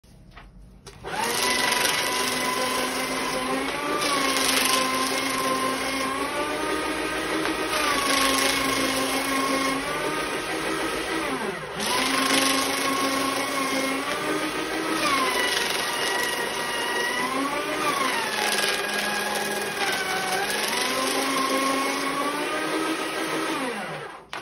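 Electric desktop paper shredder running, shredding sheets of paper: the motor's hum sags in pitch each time a sheet is fed into the cutters and climbs back as the sheet passes through. It starts about a second in, stops briefly about halfway through, and cuts off at the end.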